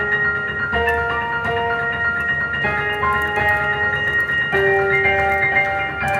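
Yamaha CP4 Stage digital piano played live: slow, ringing, sustained chords, with a new chord struck about every two seconds.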